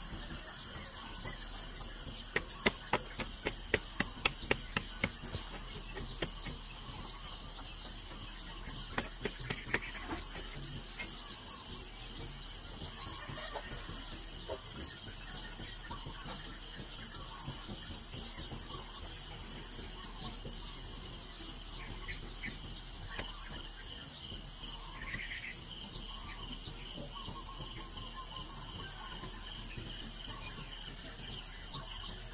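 A dense, steady chorus of insects chirring at a high pitch. A quick run of sharp knocks comes a few seconds in.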